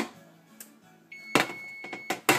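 A baking sheet and metal oven rack knocking as the tray of toast is pulled out of the oven: a sharp knock at the start and another about halfway through. A steady electronic beep from the oven sounds for about a second from roughly halfway in.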